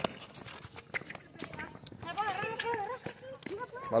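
Running footsteps and ball touches on a concrete court, heard as scattered short taps and scuffs, with a voice calling out for about a second and a half near the middle.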